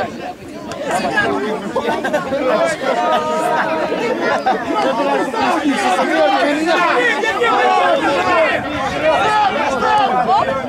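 Several voices talking and shouting over one another, dense and continuous: football players and spectators calling out during play.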